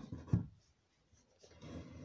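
Handling noise as a phone is carried: shirt fabric rubbing against the phone's microphone, with a short rustle and a thump right at the start and a longer rubbing spell through the second half.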